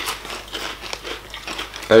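Plastic Lay's crisp bag crinkling as it is held and handled, with a short, louder rustle right at the start.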